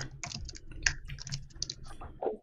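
Computer keyboard typing: an uneven run of quick key clicks.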